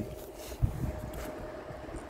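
Quiet handling noise: the phone is moved about and a small plastic bag of Lego minifigures is handled, with one soft thump just over half a second in.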